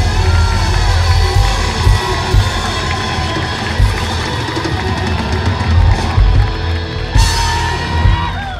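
Live rock band playing loudly: distorted electric guitar, bass guitar and a drum kit with cymbal crashes. About seven seconds in, the band hits a final crash and a guitar note is left ringing as the song ends.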